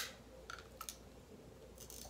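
A sharp click at the very start, then a few faint, short clicks over a quiet room.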